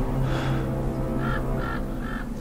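A bird cawing three times in quick succession in the second half, over a low, steady music drone.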